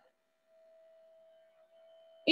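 Near silence, with only a faint steady tone.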